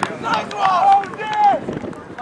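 Raised voices shouting on a rugby field during play: a few high, drawn-out shouts, the loudest about a second in.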